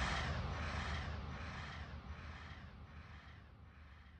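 A crow-caw-like sound in a trap track's outro, repeating evenly about twice a second over a low bass, the whole fading out steadily.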